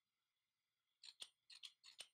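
Near silence, then about a second in a quick run of five faint, sharp clicks as a hand works the gas burner.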